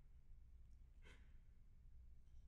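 Near silence: hall room tone with a steady low hum, and one faint, brief rustle about a second in.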